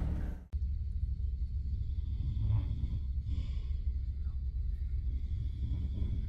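A steady low rumble, which starts after a brief dropout about half a second in, with faint scattered noises above it.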